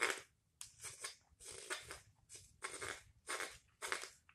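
Straight carving knife paring shavings from the rim of a wooden ladle bowl, in a quick series of short slicing cuts, about two a second.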